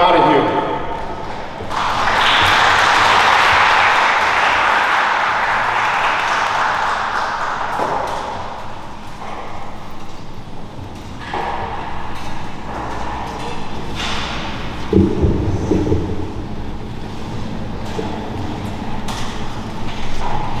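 Audience applauding in a large hall. The clapping is strongest for the first several seconds, then fades into scattered clapping and crowd voices, with a few low thuds about three-quarters of the way through.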